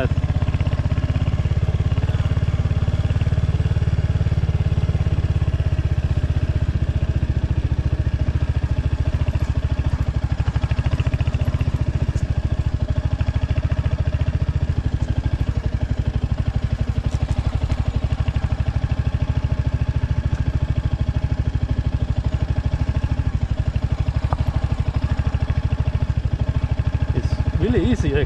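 Royal Enfield Hunter 350's single-cylinder engine running steadily at low speed, a little louder over the first few seconds.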